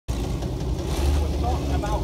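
Several vintage tractor engines running at idle together, a steady low rumble that swells briefly about halfway through, with wind on the microphone.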